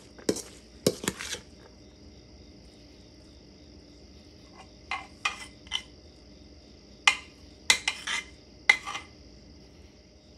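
A cup scraping and knocking against chopped cabbage and the inside of a stoneware crock as the kraut is packed down. The scrapes come in three short clusters: at the start, about five seconds in, and from about seven to nine seconds.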